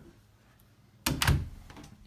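A door closing with a thunk: a sudden knock about a second in, made of a few quick impacts close together.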